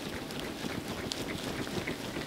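A capped jar of soil and water being shaken vigorously by hand: continuous sloshing with many quick, irregular small knocks.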